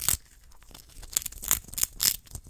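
Syrian hamster gnawing a yellow treat held right up to the microphone: short, crisp nibbling bites, one near the start and then three in quick succession in the second half.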